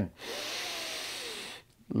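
A man's deep, full inhalation, a steady rushing breath lasting about a second and a half before it stops.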